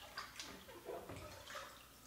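Faint sloshing and dripping of dishwater as a hand moves dishes in a sink of hot soapy water, with a few small splashes.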